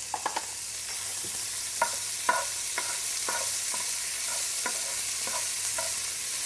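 Chopped onions and ginger sizzling in hot oil in a frying pan, with a steady high hiss, while a wooden spoon stirs them and knocks against the pan in irregular short clicks.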